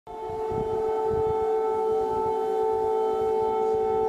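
Civil-defence air-raid siren holding one steady, unwavering tone, warning of an air attack, with an uneven low rumble beneath it. It rises quickly at the very start.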